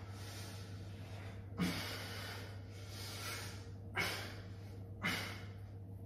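A man's forceful exhalations of exertion during dumbbell reps: three hard breaths, about 1.5, 4 and 5 seconds in, each starting sharply and fading within about half a second.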